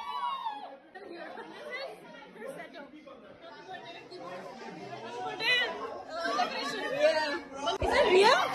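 Indistinct chatter of people talking in the background, with voices getting louder near the end.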